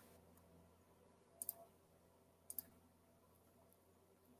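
Near silence: faint room tone broken by two pairs of short clicks, the first about a second and a half in and the second about two and a half seconds in.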